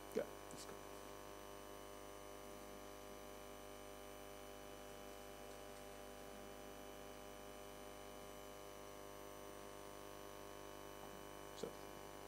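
Faint steady electrical mains hum with a buzz of many overtones, from the room's sound system, broken by two short clicks, one just after the start and one near the end.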